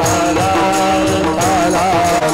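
Warkari kirtan bhajan: a group of men singing a devotional chant over a steady harmonium drone, with a mridang drum and small brass hand cymbals (taal) keeping the beat.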